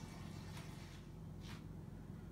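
Quiet room tone: a low steady hum with two faint, brief soft noises, about half a second and a second and a half in.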